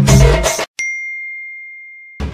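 Background music with a percussive beat cuts off abruptly, then a single bright ding rings out and slowly fades away.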